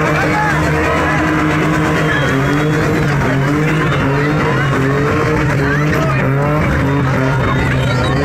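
Car engine held at high revs as the car spins donuts, its note wavering slightly up and down, with tyres skidding on tarmac. A large crowd shouts and cheers over it.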